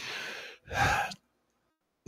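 A man's sigh into a close microphone: a breath in followed by a louder breath out, lasting about a second.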